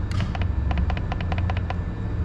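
The down button of a Honeywell Home wall thermostat being pressed over and over, a quick run of about a dozen clicks lasting about a second and a half, with a steady low rumble underneath.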